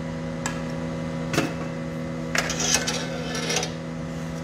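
Sharp metallic clinks and clatters of glassblowing tools and glass being handled: a single click, then a knock, then a quick run of rattling clinks. Under them runs the steady hum of the studio's furnace and blower equipment.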